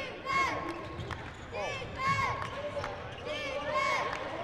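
Live basketball play on a hardwood court: sneakers squeak in short bursts three times and a ball is dribbled, over the background voices of the arena.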